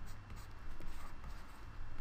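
Faint scratching and tapping of a stylus on a tablet as words are handwritten stroke by stroke, over a low steady hum.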